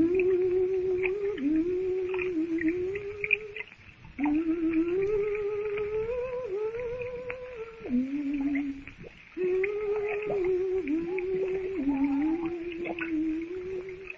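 A woman humming a slow, wordless tune to herself in a drama, in phrases with short breaks about four and nine seconds in.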